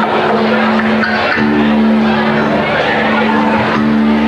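Live rock band playing loud: distorted electric guitar holding long low notes over a dense wash of drums and cymbals.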